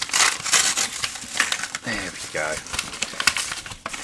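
Yellow paper bubble mailer being torn and peeled open by hand: a run of crinkling, crackling rustles of paper and bubble wrap, with a brief murmur of voice partway through.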